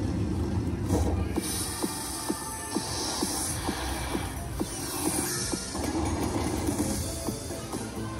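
Ultimate Fire Link China Street slot machine playing its bonus-trigger music and effects, with several rushing swooshes, as the Fire Link feature starts.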